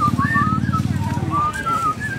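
A person whistling a wavering, sliding tune over a steady, fast-pulsing low rumble like an idling motor.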